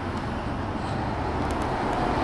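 Road traffic on the street alongside: a steady rush of car noise that swells slightly toward the end.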